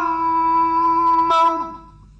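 A male Quran reciter holding one long chanted note at a steady pitch, the drawn-out vowel at the end of a phrase, with a brief catch about 1.3 seconds in before the note fades out near the end.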